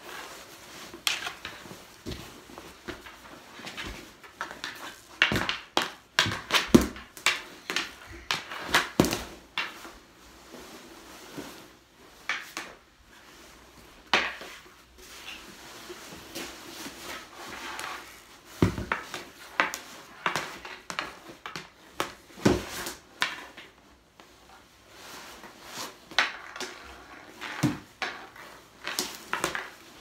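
Mini hockey shooting practice: a hockey stick striking a small ball and the ball knocking against goalie pads, the floor and a mini net. There are many sharp clacks at irregular intervals, with quieter rustling of goalie gear between them.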